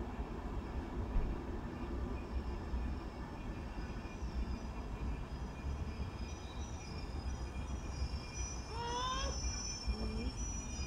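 VR InterCity 2 double-decker train approaching, a steady low rumble of wheels on rail. A thin high squeal joins about two-thirds of the way through, and a short rising tone sounds near the end.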